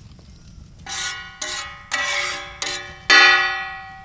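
Metal spatula scraping and striking a large metal griddle (tawa) as oil is spread across it, the griddle ringing like a bell after each stroke. About five strokes, the last near the end the loudest, its ring dying away.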